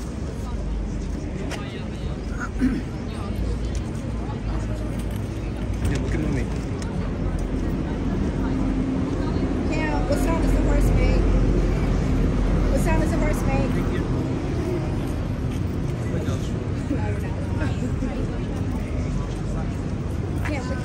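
Indistinct voices of a crowd over a steady traffic rumble, with the low sound of a passing vehicle swelling in the middle and fading again.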